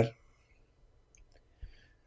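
A man's spoken word trails off, followed by a near-silent pause broken by a few faint clicks and a soft low bump shortly before he speaks again.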